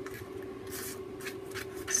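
Soft rustling and rubbing of painted Tyvek circles being picked up and slid across paper by hand: a few light brushes in the second half, over a faint steady hum.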